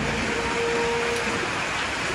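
Heavy rain falling onto the open water of fish tanks, a steady hiss of drops.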